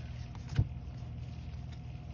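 Baseball trading cards handled in nitrile-gloved hands, with one sharp click about half a second in and a few faint ticks after, over a steady low hum.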